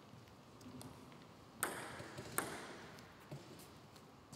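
Celluloid-type table tennis ball bouncing twice, about a second apart, each sharp click ringing on in the hall's echo.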